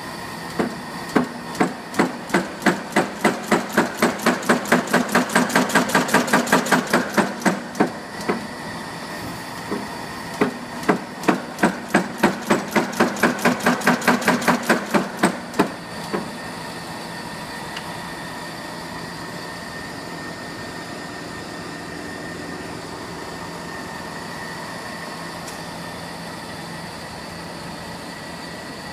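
Wafios N6 nail header cycling in two spells of rhythmic metal-on-metal strikes, each spell speeding up to about four or five strikes a second, with a pause of a couple of seconds between them. After about sixteen seconds the strikes stop and a steady mechanical hum with a faint whine carries on.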